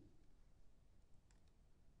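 Near silence with one faint computer mouse click about a second and a half in.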